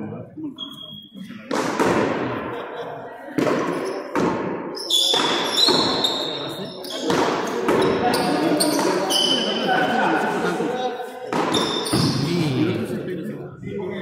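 Frontón ball struck by gloved hands and hitting the walls and floor of a three-wall court during a rally. The hits are sharp knocks about one to two seconds apart, each ringing on with a long echo in the large hall.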